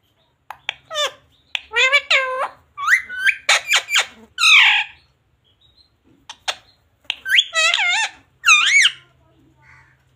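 Indian ringneck parrot talking in its squeaky mimicked voice, a run of short gliding word-like calls with sharp clicks, pausing about five seconds in and starting again about two seconds later.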